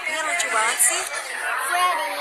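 Speech: people talking.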